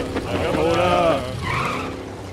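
Cartoon car tyre-squeal sound effect: one rising-and-falling screech of about a second, then a shorter scrape, fading away near the end.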